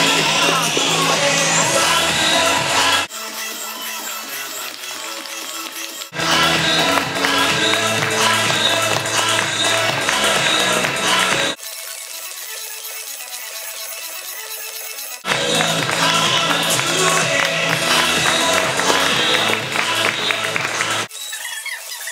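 Loud music with a beat. The bass drops out suddenly twice for a few seconds each time and then comes back, and the music drops away again shortly before the end.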